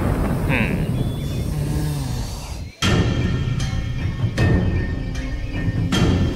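Dramatic television background score with sustained tones; it drops out briefly a little under three seconds in, then comes back with sharp hits.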